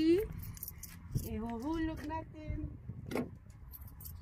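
A woman's voice making brief wordless sounds, with scattered light metallic clinks and clicks and one sharper click about three seconds in.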